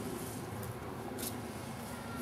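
Quiet steady outdoor background hiss, with two faint brief rustles or clicks about half a second and a second in.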